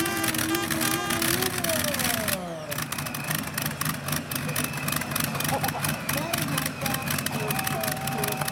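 A pulling tractor's Allison V12 engine coming off power, its note falling about two seconds in, then idling steadily with a crackle from the exhaust.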